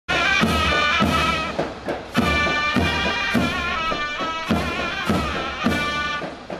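Ottoman mehter band playing: a shrill, wavering zurna melody over steady davul drum beats, a little under two beats a second.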